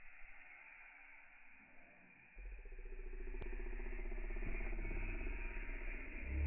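Mountain bike tyres rolling on a dirt trail, a steady rolling noise that starts about two seconds in and grows louder as the bike comes closer.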